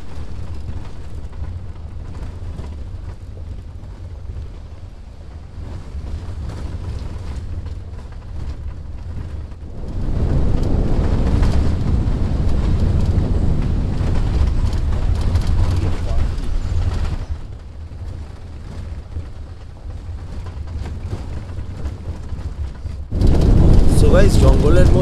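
Open safari jeep driving along a dirt forest track: engine and tyre rumble with wind buffeting the microphone. It gets louder about ten seconds in and drops back about seven seconds later.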